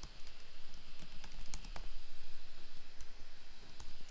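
Typing on a computer keyboard: scattered, irregular key clicks.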